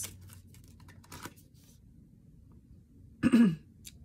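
Soft papery flicks of a tarot deck being shuffled in the hands during the first second and a half, then, about three seconds in, a short, loud throat clearing.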